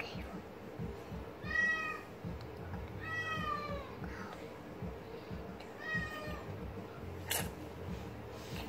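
A cat meowing three times, faint and high-pitched, each meow arching and falling in pitch.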